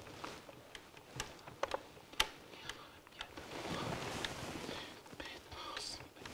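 Buttons of a push-button desk telephone pressed one at a time to dial a long number: a slow series of separate sharp clicks.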